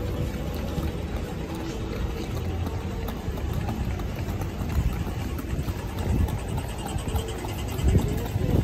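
City street traffic: cars idling and creeping past in a slow queue on a wet road, a steady low rumble with no single event standing out.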